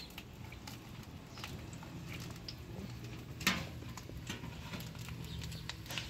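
Halved tomatoes and green chiles frying in a pan over a wood fire, with irregular light crackles and pops and one sharper pop about three and a half seconds in.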